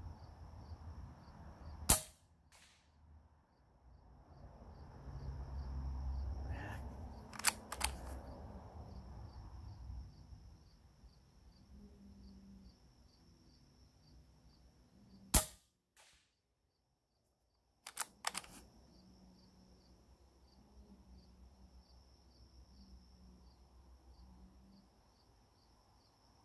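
Two sharp shots from a Hatsan Flash .25-calibre PCP air rifle, one about two seconds in and one past the middle, with a few lighter clicks in between. Crickets chirp steadily in the background.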